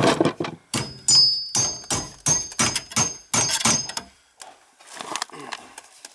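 Sharp metal-on-metal knocks on copper water pipe as a valve fitting is worked into place, ready for soldering: a quick run of about ten knocks over three seconds, some ringing briefly and high, then a few softer knocks near the end.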